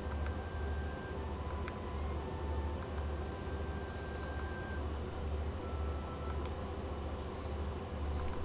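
Low background hum that pulses about once a second, with faint thin high tones and a few light ticks.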